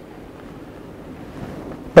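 Steady, faint hiss of room tone in a pause between a man's spoken sentences, with his voice starting again at the very end.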